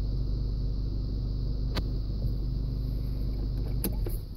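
A vehicle engine idling: a steady low hum, with a faint click near the middle and another near the end.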